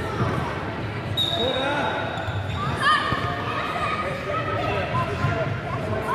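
Children's voices calling out across an echoing sports hall, with a football being kicked and bouncing on the wooden court floor.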